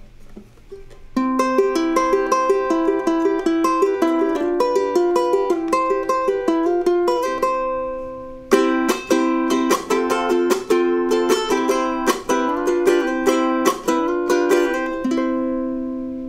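Mainland concert ukulele with a solid spruce top and solid mahogany back, played with plucked notes starting about a second in. A chord rings and fades briefly near the middle, the picking resumes, and it ends on a chord left to ring out.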